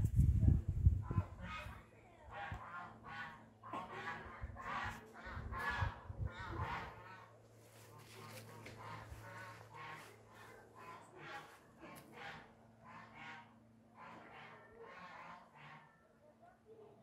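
Domestic fowl calling over and over, about two or three short calls a second, with low rumbling bumps on the microphone in the first second and again around five to six seconds in.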